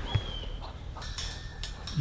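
Faint outdoor background with a low rumble, a brief high chirp just after the start, and a few faint clicks.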